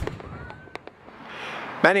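Fireworks going off: a sharp pop, a few lighter pops and a short whistle that rises and then holds, then a swelling crackling hiss near the end.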